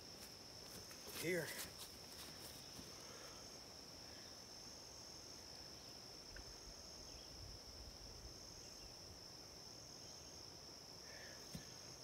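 Faint, steady high-pitched chirring of insects.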